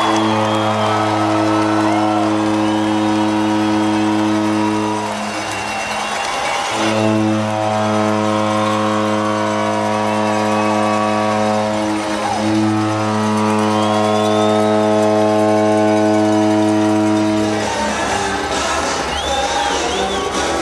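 Arena goal horn sounding three long, steady blasts of about five seconds each after a home-team goal, over the crowd's noise.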